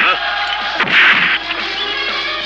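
Dubbed film fight sound effects: a loud whack about a second in, with the tail of another hit at the start, over film music.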